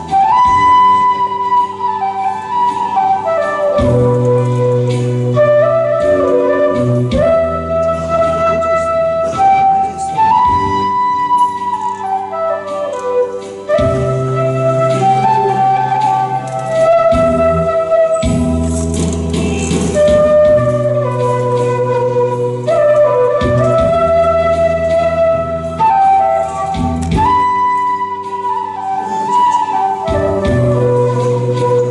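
Transverse bamboo flute playing a slow melody in falling phrases that repeat about every ten seconds, over an instrumental accompaniment with a steady bass.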